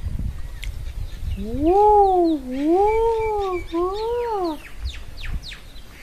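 A woman's drawn-out, sing-song "woo-oo" exclamation that rises and falls in pitch three times over about three seconds, followed by a few faint clicks.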